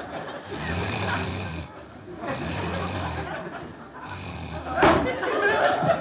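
A man snoring loudly and rhythmically, three long snores about a second and a half apart, followed by a sudden loud sound near the end.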